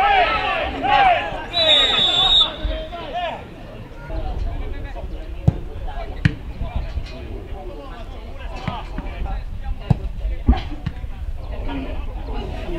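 Football players shouting to each other on the pitch, with a short whistle blast about two seconds in. Then several sharp thuds of the ball being kicked, over a low rumble of wind on the microphone.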